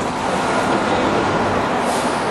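Steady city street traffic noise from passing road vehicles.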